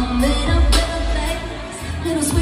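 Live pop band playing through an arena sound system, heard from the crowd: heavy bass and drums under guitar and keyboards, with singing. A sharp drum hit comes about a second in, and the music eases briefly near the end.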